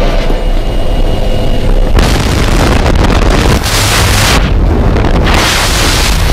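Aircraft engine and propeller drone in the jump plane's cabin, then from about two seconds in a loud rush of wind and prop blast buffeting the microphone at the open door, its hiss dipping briefly a little past the middle.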